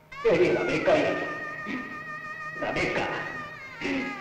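Melodramatic film background music: sustained string notes with two loud, wavering, wailing outbursts, one just after the start and one a little before three seconds in.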